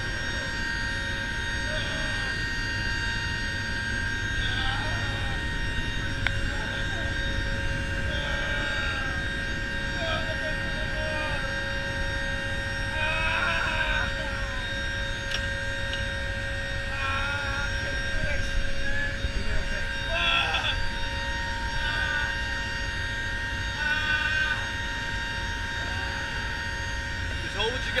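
Steady cabin drone of a Lockheed C-130J's four turboprop engines and propellers in flight, heard inside the cargo hold: a constant low rumble with several unchanging tones over it. Short, faint voices come and go over the drone.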